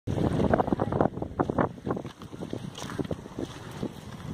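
Wind buffeting the microphone in irregular gusts, heaviest in the first two seconds.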